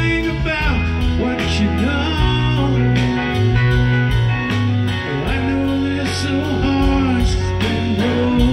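A live rock band playing loudly: semi-hollow electric guitar, bass guitar, drum kit with steady cymbal strokes, and organ.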